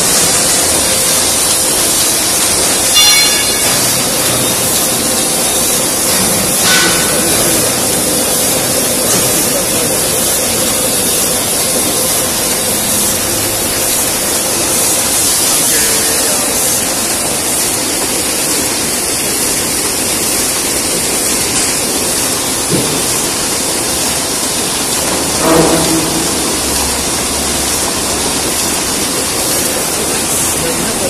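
Automatic card-to-card laminating machine (Furnax Ativa Auto) running: a loud, steady hiss-like mechanical rush from its feeder, rollers and conveyor. A few short, sharper sounds stand out about 3 and 7 seconds in, and a louder one comes near 26 seconds.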